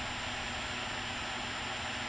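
Steady background hiss with a faint, thin high tone running through it, and no other sound.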